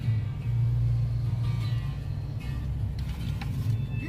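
Motorhome engine idling, a steady low rumble heard from inside the cab, with soft background music over it.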